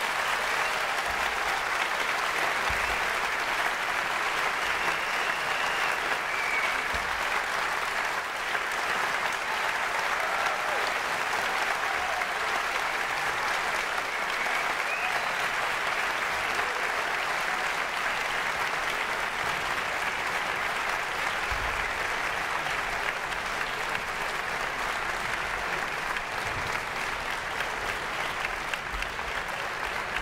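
Large audience applauding in a concert hall, steady and even.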